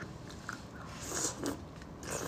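Close-miked eating sounds of a soft braised fish tail being bitten into, with a few short loud bursts about a second in.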